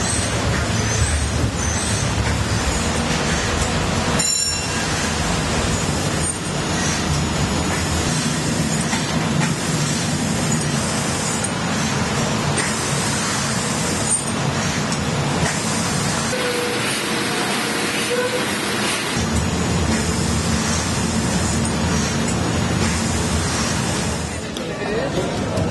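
Steady rushing noise of a paddle steamer's steam engine and paddle wheels running, with a low rumble under it. It dips briefly about four seconds in.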